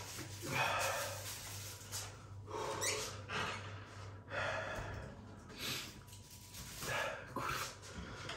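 A man breathing hard and sharply through his mouth, a gasp about every second to second and a half, as he suffers the burn of a chip seasoned with Carolina Reaper and Trinidad Moruga Scorpion peppers.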